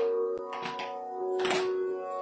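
Steady sruti drone of held notes, with a few soft hand slaps keeping the tala just before the Carnatic song begins.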